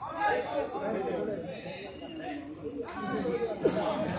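Indistinct chatter of several men's voices talking and calling at once, with a single sharp knock a little under three seconds in.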